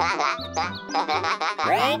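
A cartoon robot's wordless, squawky chatter over bouncy background music, ending in a few rising glides.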